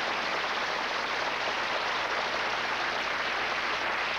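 Audience applauding steadily at the end of a song.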